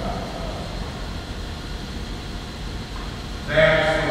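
A pause in a man's speech, with only a steady low hum. Then the man's voice starts again loudly about three and a half seconds in.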